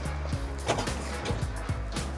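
Background music with a steady beat over a sustained bass line.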